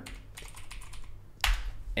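Typing on a computer keyboard: a few soft keystrokes, then one louder key press about one and a half seconds in.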